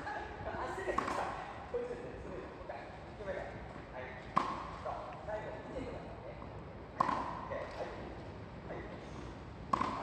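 Tennis balls struck with rackets: four sharp pops, one every two to three seconds, ringing slightly in a large indoor hall, over people talking.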